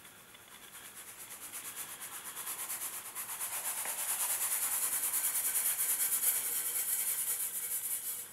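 Fine dry powder shaken from a long-handled scoop and sifting onto clay laid out for treading: a rhythmic hiss at about seven shakes a second. It grows louder over the first few seconds, then holds steady.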